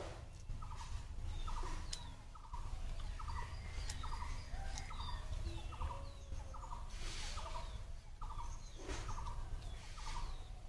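An animal calling over and over: a short rattling call, repeated about every half second and steady in pace, with faint bird chirps above it.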